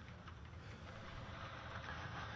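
Faint, steady low hum under quiet room noise.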